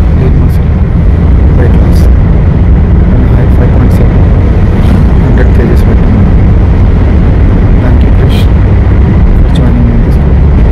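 Loud, steady low rumble of road and engine noise inside a moving car's cabin, with a man's voice talking under it.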